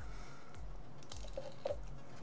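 Soft background music with a steady low beat, and faint rustling of hands on the cornhole bag fabric.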